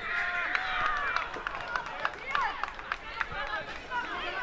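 Young footballers' voices shouting and calling out across the pitch during play, high-pitched and unintelligible, with a few short knocks.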